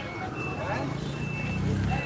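A vehicle's reversing beeper sounding short, steady high beeps about twice a second, over an engine running close by that gets louder near the end.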